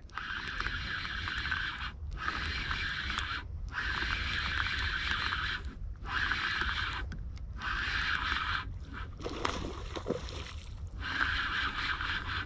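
A fishing reel being cranked in spells of one to two seconds with short pauses, its gears making a rough whir as the line is wound in.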